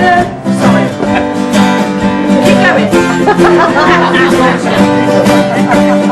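Acoustic guitars strumming and picking a song together in a steady rhythm.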